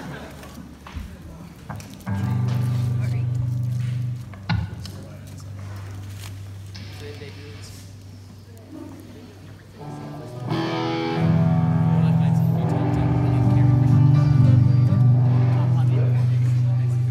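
Electric bass and guitars ringing through stage amplifiers with held notes and chords, no steady beat: one long low note from about two seconds in that stops near four seconds, a sharp click, then from about ten seconds in louder sustained bass notes and guitar chords ringing on.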